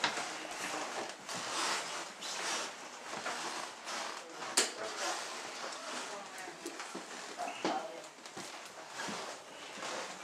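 Footsteps and shuffling of several people moving through a doorway toward basement stairs, with handling rustle and faint murmured voices. A single sharp click sounds about four and a half seconds in.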